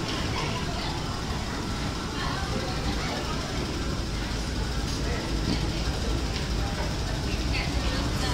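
Ambience of a busy metro station concourse: a steady low rumble with the indistinct chatter of passers-by.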